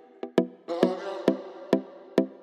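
Dancehall instrumental beat: a pitched, percussive hit repeats about twice a second, and a fuller synth layer comes in about two-thirds of a second in.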